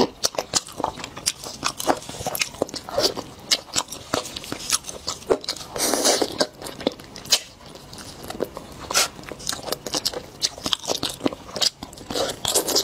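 Close-miked eating sounds of roast chicken being bitten and chewed off the bone, a dense run of sharp mouth clicks with a few louder, noisier bites, the biggest about six seconds in.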